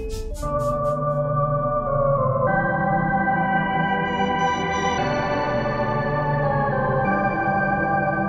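Steinberg X-Stream spectral synthesizer, on its 'Think Backwards' preset, playing sustained chords from a keyboard. The chord shifts to a new one about every two to two and a half seconds. A fast ticking pulse dies away in the first half-second.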